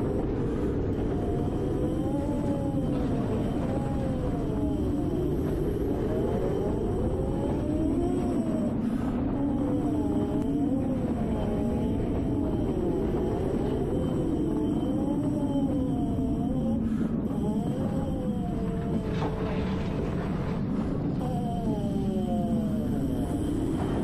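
Brass mouthpiece buzzing on its own, without the trombone, the pitch sliding up and down in continuous smooth waves as the player changes only the speed of the air. A steady low rumble runs underneath.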